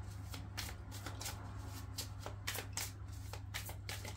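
A deck of tarot cards being shuffled by hand: a steady run of quick, irregular soft clicks of card edges against one another.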